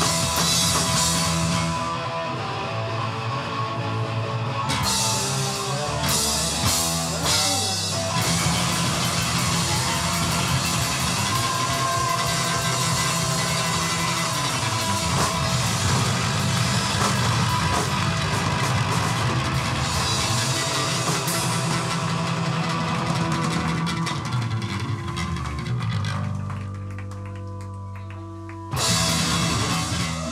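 Punk rock trio playing live: distorted electric guitar, bass and a drum kit driving hard. About four seconds from the end the playing thins to held ringing notes, then the whole band comes back in with a sudden loud hit.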